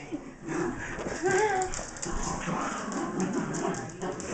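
Two dogs playing tug-of-war with a rope toy: a low growl with a short whine about a second in.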